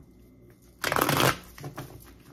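A tarot deck riffle-shuffled, its two halves of cards flicking together in one quick rattle of about half a second, a little under a second in, followed by a few faint ticks as the cards settle.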